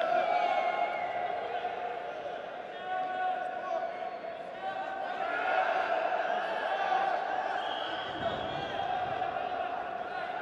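Indistinct voices calling out in a large, echoing sports hall during a wrestling bout, with no clear words.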